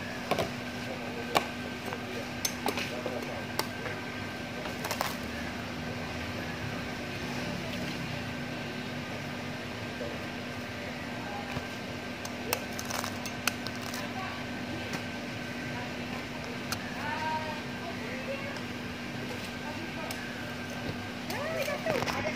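Durian husks being handled and pried open with a knife over plastic tubs: scattered sharp clicks and knocks. A steady machine hum runs underneath, and faint voices can be heard in the background.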